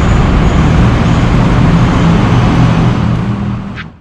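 Loud road traffic noise with a vehicle engine humming low through it; the sound cuts off suddenly just before the end.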